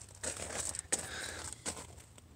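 Faint rustling and handling noise with a few light clicks, made by a person moving out of a pickup cab while holding the recording phone.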